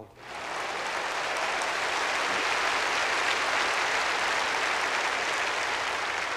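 Audience applause that swells up within the first second and then holds steady.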